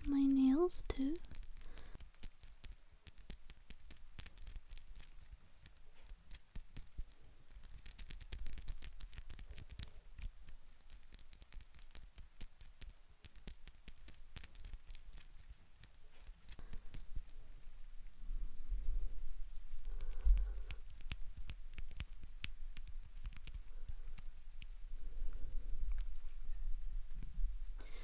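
Close-miked ASMR trigger sounds: a fast, irregular run of crisp clicks and scratches right at the microphone. After about seventeen seconds the clicking thins out and soft low thumps of handling come in.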